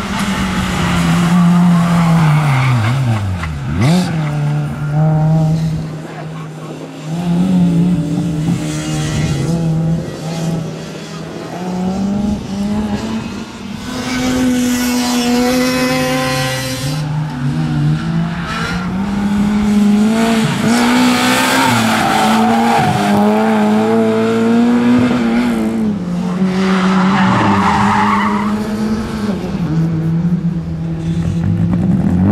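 Renault Clio's four-cylinder engine revving hard and dropping repeatedly through a slalom, with gear changes, and tyres squealing in the turns.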